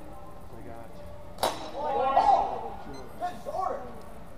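A single sharp clash of longsword blades with a short metallic ring about a second and a half in, followed by a couple of raised voices calling out after the exchange.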